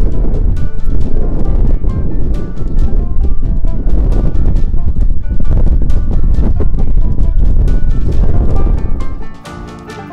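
Strong wind buffeting the microphone: a loud low rumble with irregular knocks, under background music. The wind noise cuts off about nine seconds in, leaving the music alone.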